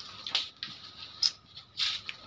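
A few short scrapes and rustles of objects being moved about under a table.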